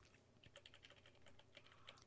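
Near silence: room tone with a run of faint, quick clicks from a computer keyboard.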